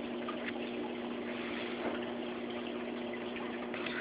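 Steady rushing of water circulating in a saltwater reef aquarium, with a constant hum from the tank's pump.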